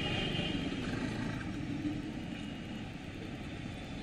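Street traffic on the field microphone: a motorbike passing close by, its sound fading over a few seconds, over a steady low rumble of road noise.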